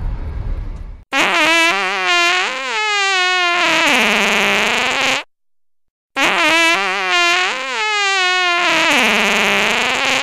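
Sad-trombone sound effect, a descending wavering 'wah-wah' that ends on a long held note, played twice in a row with a short gap between.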